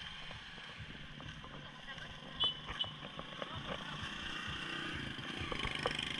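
Outdoor street ambience on a walkway: scattered footsteps, a steady rumble of traffic and faint voices of people walking nearby. A short high chirp sounds about two and a half seconds in, and the murmur of voices grows louder near the end.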